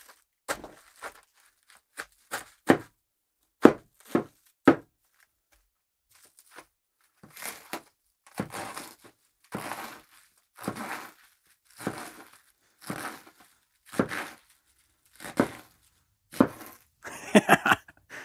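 A sharp high-carbon steel ulu knife made from a horseshoe cutting through a head of cabbage, with crisp crunches and snaps as it slices into the head. Then the knife chops the cut leaves against a wooden bench top in short strokes about once a second.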